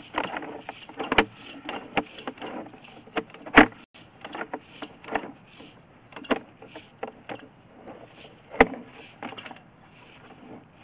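Sewer inspection camera's push cable being fed by hand into a three-inch ABS cleanout: irregular clicks and knocks over a low rustling, with sharper knocks about three and a half seconds in and again near the end.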